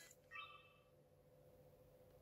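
Canon IXUS 70 compact digital camera powering on: a faint, short electronic start-up beep about half a second in.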